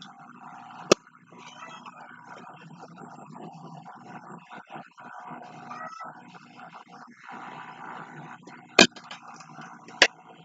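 Two sharp clicks, one about a second in and one near the end, with faint room noise between them, as objects such as a clear plastic box are handled at a table.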